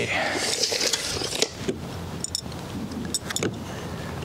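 A tape measure being worked along vinyl soffit panels: a few light clicks and small metallic rattles, over a steady hiss.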